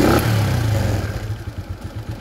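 A 125 cc scooter engine on a KLX carburettor, its throttle blipped by hand: the revs jump up at once and drop back toward idle within about a second and a half. Quick to rise and quick to fall is the sign of a carburettor working properly; revs that hang before falling would point to a faulty carburettor.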